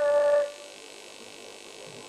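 A man's voice holding one long unaccompanied sung note, which breaks off about half a second in, leaving only a faint steady hiss.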